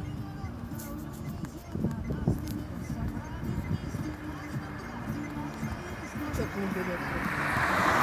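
Indistinct voices in the background, then a car approaching close by, its road and engine noise swelling near the end.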